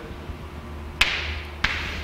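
Two sharp taps on a touchscreen board, the first louder and ringing briefly, the second about two-thirds of a second later, over a low steady hum.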